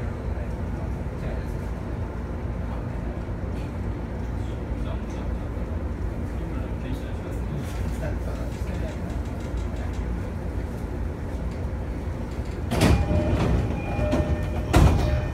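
Steady low rumble of a commuter train heard from inside the passenger car. Near the end comes a sudden louder clatter with ringing tones.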